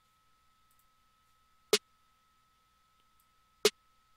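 Soloed snare sample of a beat playing back, one short, sharp hit about every two seconds, once per bar at 125 BPM: two hits, the first near the middle and the second near the end. A faint steady high tone runs underneath.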